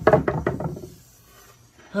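A pine one-by-six board knocking and rattling against a metal table saw top as it is handled: a quick run of sharp knocks in the first second.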